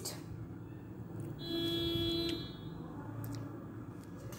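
A single steady pitched tone, like a horn or buzzer, lasts about a second, starting about one and a half seconds in, over low background noise.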